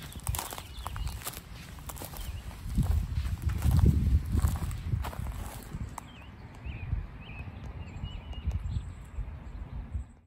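Footsteps on a wood-chip mulch path, a quick run of soft crunching knocks through the first six seconds with a low rumble strongest a few seconds in. After that the steps thin out and a few faint high chirps are heard.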